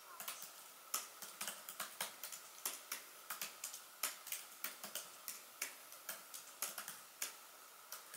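Typing on a laptop keyboard: irregular quick key clicks, several a second, with brief pauses between bursts of keystrokes.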